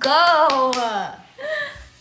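A woman's voice in a long, excited exclamation drawing out "let's go", with two quick sharp claps about half a second in, then a shorter vocal sound near the end.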